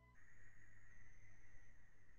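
Faint room tone with a steady high-pitched whine and a low hum, the background noise of an open microphone.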